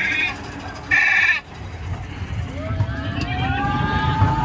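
Roller coaster mine train rumbling along its track, with riders giving two short high-pitched screams, one at the start and one about a second in, then drawn-out rising cries.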